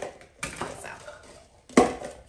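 Objects being handled on a tabletop: a short rustling clatter about half a second in, fading over about half a second, then a spoken "So" near the end.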